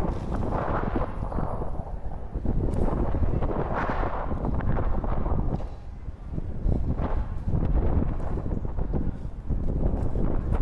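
Strong wind buffeting the microphone of a 360 camera on a selfie stick: a heavy rumble that rises and falls with the gusts, easing briefly about six seconds in. Underneath it, inline-skate wheels roll over rough pavement.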